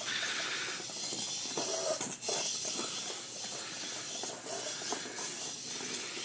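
Small electric drive motors of a line-following robot running as it follows the track, heard as a steady hiss with a few faint clicks.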